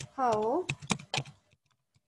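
Computer keyboard typing: a few sharp, separate key clicks in the first second and a half, then quiet.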